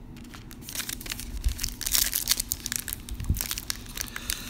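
Foil trading-card pack wrapper crinkling as it is handled and torn open, a dense run of crackles that starts a little under a second in and is loudest around two seconds.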